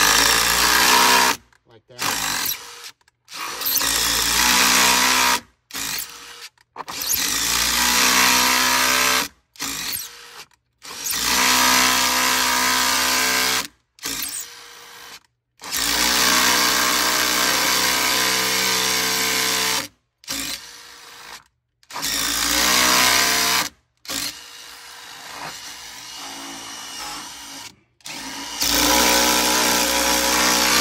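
DeWalt cordless impact driver running in many short start-stop bursts of a few seconds each, driving a threaded hurricane-panel anchor into a predrilled hole in brick and backing it out and running it back in to clear mortar built up in the hole.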